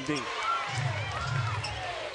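Basketball game sound from the court: sneakers squeaking on the hardwood floor, twice briefly, and a ball being dribbled during live play.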